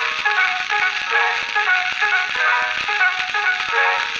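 Instrumental interlude from a 1903 acoustic recording: the accompaniment plays a melody in short stepped notes, with the clicks and crackle of an old record's surface throughout.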